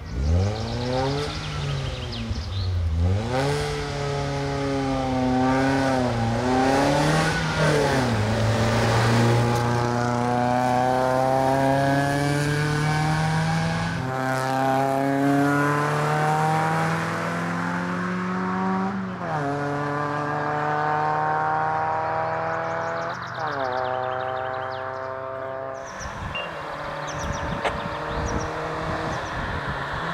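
Suzuki Swift Sport hill-climb car's 1.6-litre four-cylinder engine revving hard, rising and falling as it works through a hairpin, then pulling uphill with the pitch climbing in each gear and dropping sharply at two upshifts. Near the end the engine fades away.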